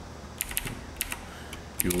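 Computer keyboard keys clicking in a few scattered keystrokes, a short burst about half a second in and another about a second in, as text is typed and backspaced.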